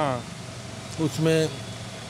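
Short fragments of a man's voice: one falling at the very start and a brief one about a second in. Between them is a steady background of street traffic noise.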